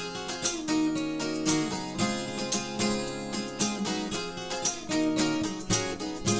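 Acoustic guitar strumming chords in an even rhythm, one stroke about every second, each chord left to ring. The passage is instrumental, with no singing.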